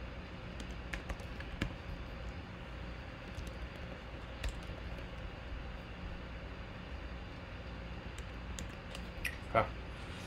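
Computer keyboard keystrokes and mouse clicks, a few sharp clicks at a time, scattered irregularly over a steady low room hum.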